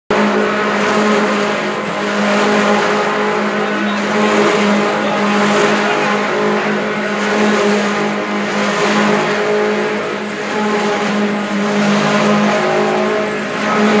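Wood shavings machinery and an inclined belt conveyor running, with a loud steady machine drone, a constant hum and a hiss from shavings pouring into a metal hopper.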